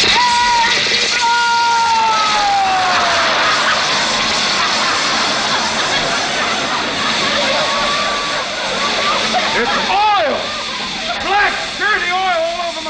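Radio sound effect of a new oil furnace going haywire: a loud, steady rushing roar with falling whistles in the first few seconds. It is the malfunction that ends with oil blown all over the room. Near the end, voices and laughter rise over the roar.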